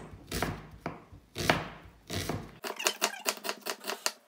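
Kitchen knife slicing an onion on a wooden chopping board: a few spaced cuts through the onion, then, a little past the middle, a quicker run of knife taps on the board, about five a second.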